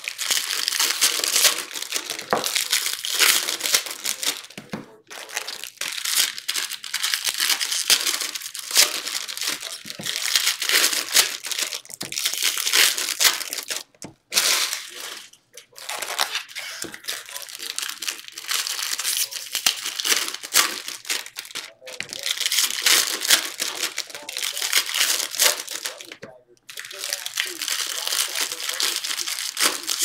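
Foil-wrapped baseball card packs being handled and shifted in a stack, a loud crinkling and rustling of the foil wrappers that comes in long stretches with brief pauses.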